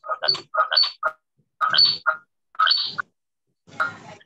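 Choppy, garbled voice sound coming through a video call in four short bursts with silent gaps between them. It is the audio echo of a participant joined on two devices with both speakers on, which the host sets out to cure by asking that one speaker be muted.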